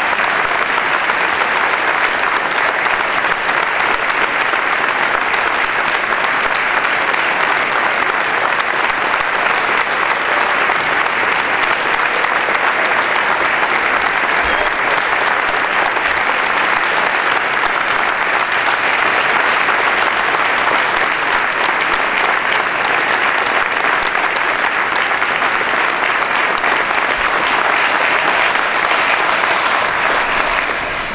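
Long, steady applause from an audience, many hands clapping together without a break.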